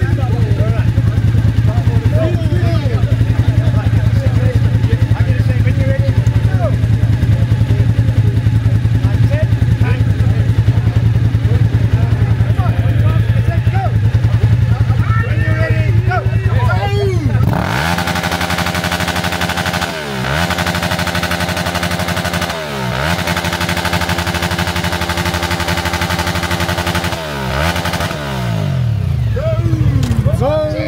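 Suzuki sport motorcycle idling steadily. About 17 seconds in the throttle is opened and the engine is held at high revs, dropping back briefly three or four times before being revved up again.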